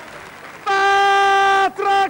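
A loud, steady horn-like tone starts about two-thirds of a second in, sags in pitch and breaks off, then sounds again right away near the end.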